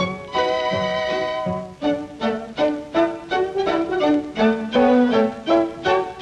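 Film soundtrack music led by a violin: a long held note near the start, then a lively run of quick, short notes.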